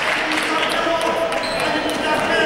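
Basketball bouncing on a sports-hall floor, with voices of players and spectators mixed in.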